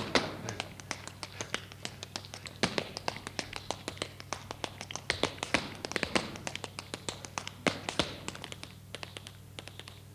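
Tap shoes striking a stage floor in an unaccompanied tap routine: quick, uneven clusters of sharp taps and heel clicks that thin out near the end, over a low steady hum.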